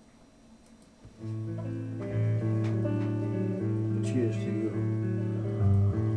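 A rock band recording starts about a second in: a bass line of long held notes that step in pitch, with guitar playing over it and a few sharp hits.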